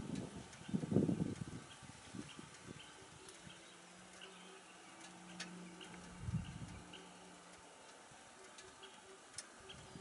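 Quiet outdoor field ambience: a few low bumps in the first second or so, then a faint steady hum through the middle, with faint short chirps and an occasional click.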